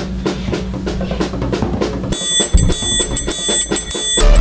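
Drum kit played in a fast, even pattern of strokes within a full band mix with a steady bass line. A little after two seconds in, the mix changes abruptly: the bass drops away, sustained high tones ring out over scattered drum hits, and the sound gets louder.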